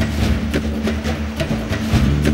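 Tense background music: sustained low notes under a quick, ticking percussion beat of about four hits a second.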